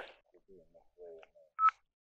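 A single short electronic beep about one and a half seconds in, after faint murmured voice sounds.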